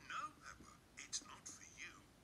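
Quiet cartoon dialogue played through a computer's speakers and picked up off the screen, sounding thin and whispery with little low end.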